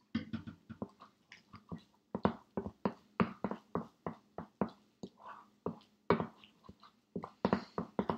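A spoon stirring and scraping mashed egg-yolk filling in a glass bowl: an irregular run of short knocks and wet squishes, about three a second.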